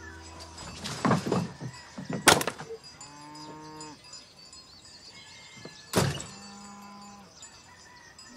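An axe splitting firewood: sharp woody cracks, a light one about a second in and two loud ones about two seconds in and about six seconds in.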